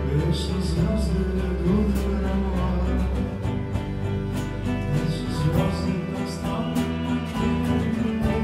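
A folk band playing live: guitar and other plucked strings over a sustained low bass line, with sharp percussive hits or strums recurring at a steady beat.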